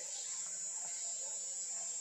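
Quiet room background: a low, even hiss with a thin, steady high-pitched whine running through it.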